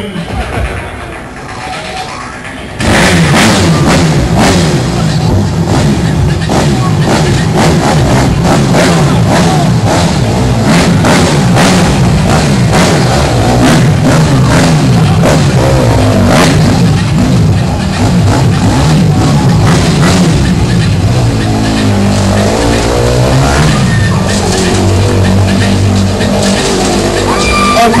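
Motorcycle engine running and revving as it circles inside a steel-mesh globe of death, under loud rock music with drums that comes in suddenly about three seconds in.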